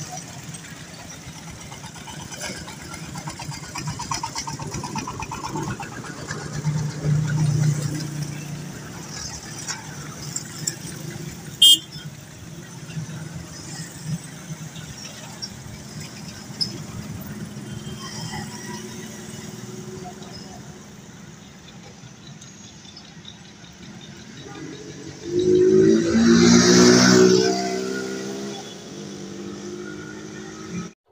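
Road traffic: car and motorcycle engines running past, with a sharp click about twelve seconds in. Near the end one engine passes close and loud for about three seconds.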